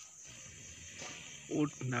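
Steady high-pitched insect buzz, with a person's voice exclaiming "oh" near the end.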